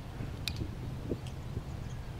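Outdoor ambience with a steady low rumble and a few faint clicks and ticks, the sharpest about half a second in.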